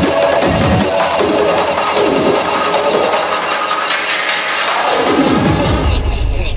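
Hardcore techno from a DJ mix: the kick drum stops about a second in, leaving a breakdown of sustained synth lines with a falling sweep, and the kick comes back at the very end.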